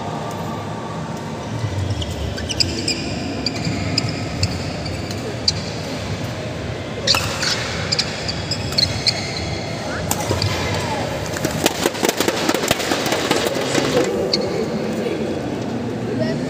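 Badminton rally: shuttlecock struck by rackets every second or two, with short shoe squeaks on the court floor, over a murmur of voices in a large hall. After about ten seconds comes a few seconds of rapid clapping as the point ends.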